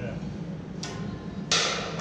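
A steel fitting handled against a steel narrowboat shell: a faint clink a little under a second in, then a sudden, louder metallic knock about one and a half seconds in.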